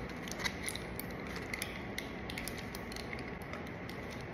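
Plastic-and-foil blister pack of paracetamol tablets crackling and clicking in the hands as the tablets are pressed out, a few light clicks mostly in the first half, over a steady room hum.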